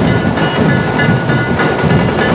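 Dhol-tasha ensemble drumming: deep dhol beats under fast, rattling tasha rolls, loud and continuous.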